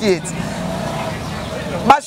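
A motor vehicle running steadily, a low hum under a wide, even rush of noise that drops in pitch at the start and then holds. Speech breaks in just before the end.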